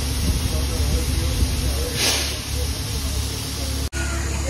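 Steady low rumble of a diesel engine running, with a short hiss of escaping compressed air about two seconds in.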